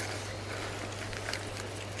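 Quiet background: a steady low hum under a faint even hiss, with no distinct event.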